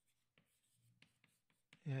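Faint, scattered scratches and taps of chalk writing on a blackboard, with a man's voice coming in near the end.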